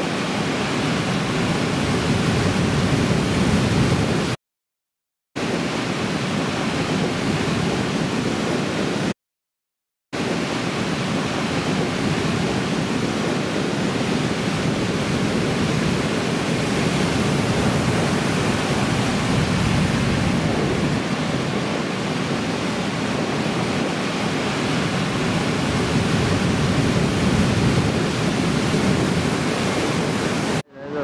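Continuous rushing roar of breaking ocean surf. It drops out to total silence twice, each time for about a second, then resumes.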